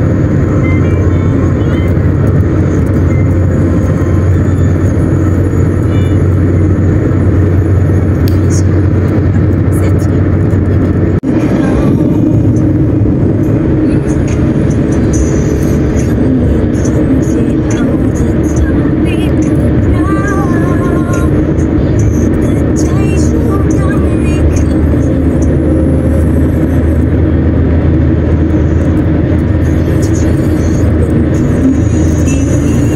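Steady road and engine noise of a car driving along, heard from inside the cabin.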